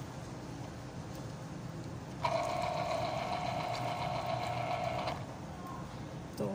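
Small electric citrus juicer's motor running: a low hum, then about two seconds in a louder steady whine that lasts about three seconds and cuts off suddenly.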